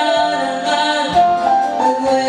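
Woman singing a gospel song through a handheld microphone with instrumental accompaniment, in long held notes over a low beat.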